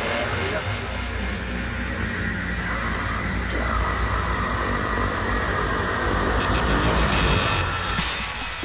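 Beatless breakdown in a progressive psytrance mix: a dense, noisy synthesized sound-effect wash over a deep rumble, with a voice-like element in it, growing louder near the end.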